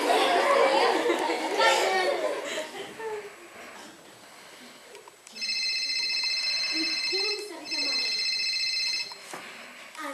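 Audience laughter and voices. After a short lull, an electronic telephone ringtone plays as a stage sound cue: a steady high beeping ring lasting about four seconds, with a brief break in the middle.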